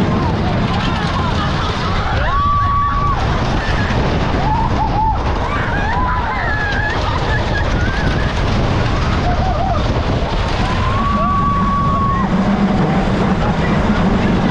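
Viper wooden roller coaster train running fast over its track: a steady loud rumble of wheels and rushing wind. Riders scream over it, with long high screams about two seconds in and again near eleven seconds, and shorter yells around five to six seconds.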